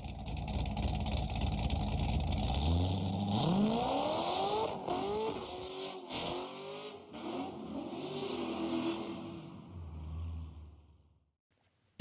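C6 Corvette's V8 exhaust, rumbling low at first, then revving up about three seconds in and rising and falling several times. It holds at high revs for a couple of seconds, drops back and fades out shortly before the end.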